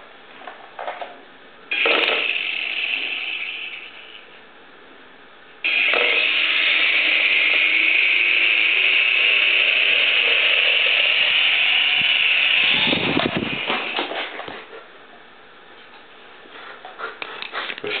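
Small coaxial remote-control toy helicopter's electric motors and rotors whirring with a high buzz. A short burst comes about two seconds in, then a steady run starts abruptly at about six seconds and swells into a broader rush and fades around thirteen seconds. Light clicks follow near the end.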